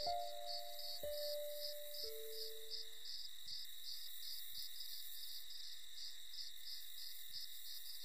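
A steady, regular chirping, about three chirps a second, over a high steady ringing. Three sustained melody notes, struck a second apart, fade out about three seconds in.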